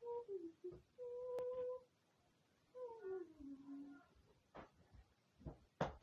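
A girl's voice humming wordless notes: a short falling note, a steady held note, then a longer note sliding down in pitch. A few soft knocks follow near the end.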